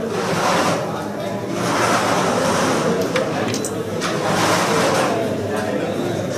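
Indistinct murmur of voices in a large hall, rising and falling, with a few faint clicks about halfway through.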